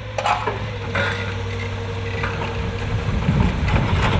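A bundle of logs being pushed off a logging truck down a timber log-dump slide: wood knocking and cracking, with a heavy machine's engine running under it. A heavy low rumble builds near the end as the bundle slides down.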